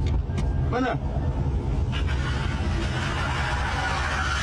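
Steady low road and engine rumble inside a moving Toyota car's cabin, with a short voice about a second in and a rushing noise that swells from about two seconds in.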